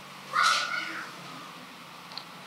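A short, high-pitched animal call, once, lasting about half a second, a little after the start.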